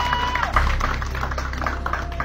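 Audience applauding: a fast, irregular patter of claps.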